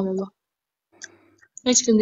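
Speech: a woman talking in short phrases, broken by about a second and a half of silence in the middle.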